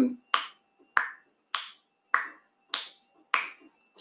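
Countdown ticking: six sharp ticks, evenly spaced a little over half a second apart, timing a three-second guess.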